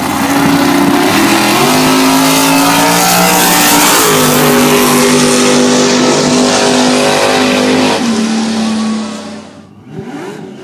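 Drag racing car engine at full throttle, very loud, its pitch stepping several times as it runs down the strip, then fading away near the end.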